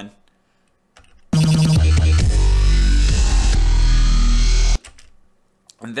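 Electronic music with heavy deep bass, the track driving the audio spectrum effect, played back in a timeline preview. It comes in abruptly about a second in and cuts off suddenly a few seconds later.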